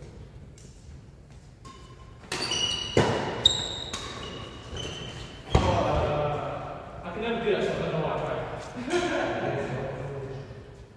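Badminton play: trainers squeaking on the wooden hall floor and three sharp racket strikes on the shuttlecock, the loudest about halfway through.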